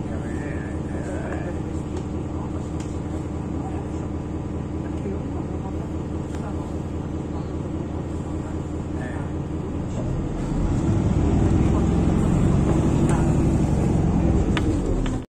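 Outdoor street ambience: a steady low rumble of traffic, swelling louder from about ten seconds in, with faint voices in the first couple of seconds.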